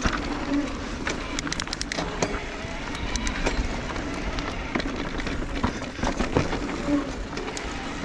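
Electric mountain bike descending a dirt trail: tyres rolling on loose dirt, the bike rattling over rough ground, and brief brake noise now and then that the rider calls "real bad".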